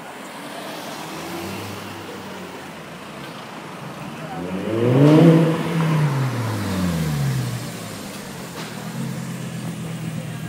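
Audi R8 Spyder engine revving as the car pulls off. The pitch climbs to a loud peak about five seconds in and drops away, a second shorter rev follows, and then it settles to a low steady run near the end.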